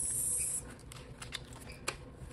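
Paper dollar bills being handled by hand: a brief high rustling hiss in the first half-second as the notes are riffled, then a few light snaps and flicks of paper.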